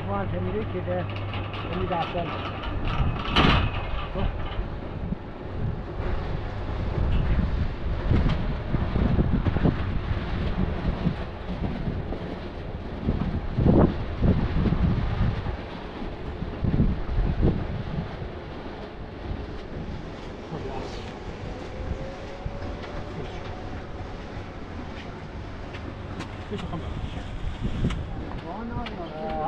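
Small electric hoist winch on a steel gantry running with a low hum and rumble as it lifts buckets of concrete to the roof, with a few loud metallic knocks and clanks from the load and frame.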